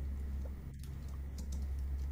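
A few faint computer clicks over a steady low hum.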